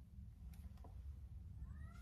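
A faint, short high-pitched call that rises and falls in pitch near the end, over quiet room hum.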